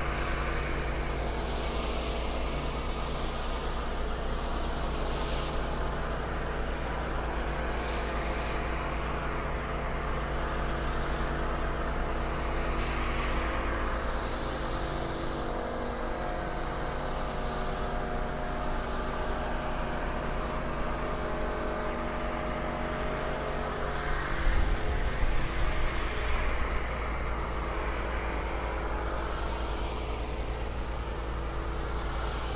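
An engine running steadily at idle, its pitch unchanging throughout, with a short stretch of louder, uneven noise about 25 seconds in.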